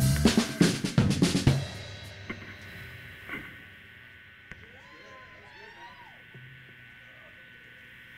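Live drum kit: a quick flurry of drum and cymbal hits in the first second and a half that then rings off, leaving faint voices over low room noise.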